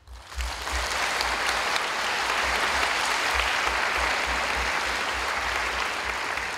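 Audience applauding, breaking out suddenly and then holding steady.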